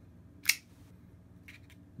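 A folding knife's blade snapping open and locking, one sharp click about half a second in. A couple of faint ticks follow about a second later.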